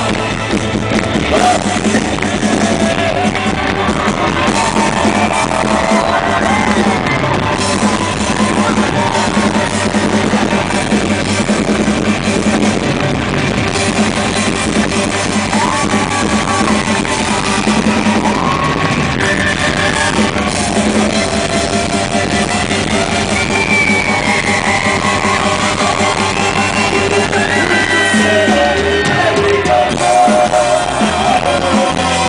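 Live rock band playing, with electric guitars, drums and a brass section, recorded from within the crowd at a concert.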